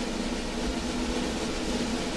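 Orchestral snare drum roll, held steadily and slowly getting a little louder, over a low sustained note.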